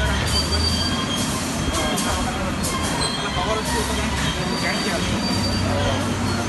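Railway freight wagon noise: a steady rumble with thin, high squealing tones coming and going, and a few clicks.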